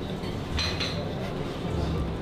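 Restaurant background sound: indistinct voices, with a few light clinks of cutlery and dishes.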